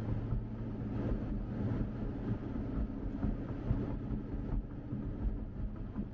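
The V8 of a 2019 Chevrolet Corvette Grand Sport running steadily under way, heard from inside the cabin, mixed with road noise.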